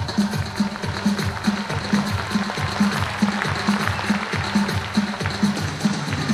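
Traditional Tatar folk dance music with a steady, quick drum beat of about two and a half strokes a second under the melody.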